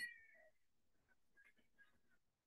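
Near silence on a call line. A short high-pitched tone falls and fades out in the first half second, then there are only faint scattered ticks.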